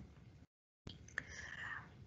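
A quiet pause: a short stretch of dead silence, then two faint clicks and a soft breathy, whisper-like sound.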